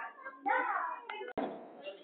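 Soft, low voice sounds and handling noise, with one sharp click a little past halfway followed by a brief faint hiss.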